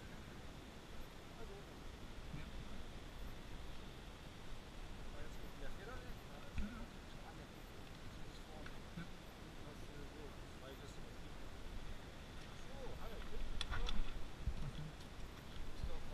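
Faint, indistinct voices of people talking quietly, with a few isolated clicks. The voices grow somewhat louder near the end.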